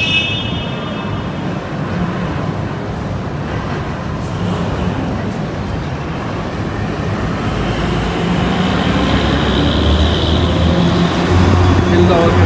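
Steady outdoor noise with a low vehicle-engine rumble that grows louder over the last few seconds.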